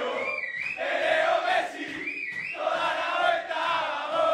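A group of men chanting and shouting a football celebration chant together in rhythmic phrases, with two brief high gliding notes, one near the start and one about two seconds in. The sound is thin, heard through a phone livestream.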